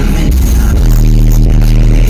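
Live concert music over a large PA, recorded from the audience: a deep sustained bass with a steady beat, without a vocal line in this stretch.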